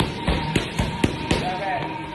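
Boxing gloves smacking into focus mitts in a fast flurry of about six sharp hits in the first second and a half, over background music.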